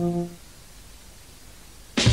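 A held music chord ends about a third of a second in, leaving a faint steady hiss of VHS tape between adverts. Loud electronic music cuts in right at the end.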